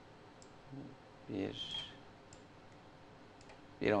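A few sparse, faint clicks from a computer mouse and keyboard, with a brief murmured vocal sound about a second and a half in.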